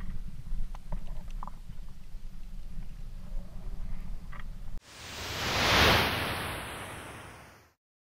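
Low wind rumble on an action camera's microphone with a few faint clicks of rope gear. About five seconds in it cuts to a whoosh sound effect that swells, peaks about a second later and fades away.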